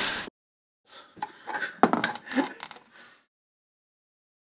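A cloth wiped and scrubbed across a hardened steel block, brushing away the fragments of a shattered steel bearing ball, with scraping and several sharp clinks. A short burst at the start, then a stretch of rubbing and clinks that stops a little after three seconds in.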